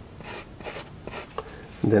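Pencil scratching on drawing paper in a few short sketching strokes.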